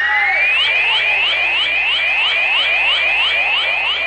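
Electronic radio sound effect for a time check: a whistle-like tone glides upward, then breaks into a rapid run of rising chirps, about four a second, steady throughout.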